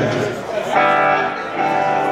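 Electric guitar through an amplifier sounding held chords: one struck about three-quarters of a second in and rung for about half a second, a second struck about 1.6 s in, over voices in the room.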